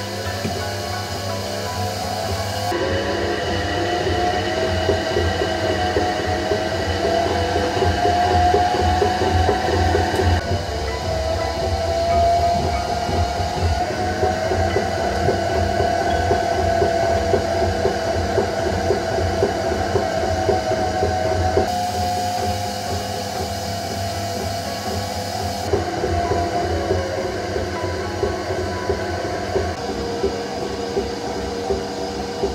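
Electric potter's wheel running while wet clay is thrown on it: a steady motor hum and rumble with a whining tone that drifts slowly up and down in pitch. The sound shifts abruptly a few times.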